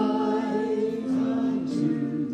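Voices singing a slow worship chorus together, accompanied by acoustic guitar.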